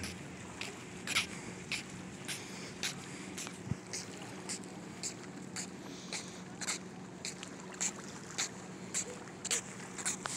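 Footsteps on a concrete pier walkway, a bit under two steps a second, close to the microphone, over a faint steady low hum.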